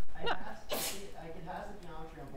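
A person sneezing once: a short rising intake, then one sharp burst about three quarters of a second in.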